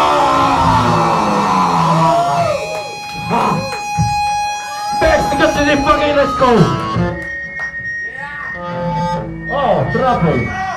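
Live punk band heard through a club PA: the full band plays loud and dense for about the first two seconds, then drops into a looser stretch of ringing guitar feedback tones, scattered guitar noise and short shouted voices.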